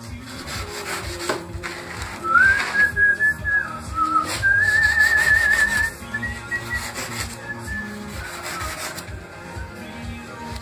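A person whistling a few held notes, one of them with a warble, over the dry rubbing and scraping of a hand tool on styrofoam. The whistling starts about two seconds in and fades out around the six-second mark.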